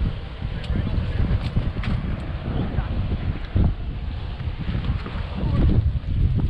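Wind buffeting the microphone: a gusty low rumble, with a few light clicks and knocks from the boat.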